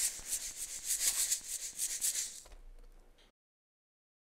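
Steam-train chugging sound effect: quick, even hissing chuffs that fade out about two and a half seconds in, followed by silence.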